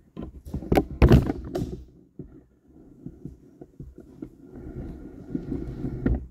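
Knocks and taps of a large wooden compass and other tools handled against a tabletop. The loudest cluster comes about a second in, followed by lighter scattered taps.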